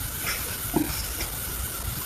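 Steady low hiss with a few faint, soft handling sounds as hands fumble with a phone and paper.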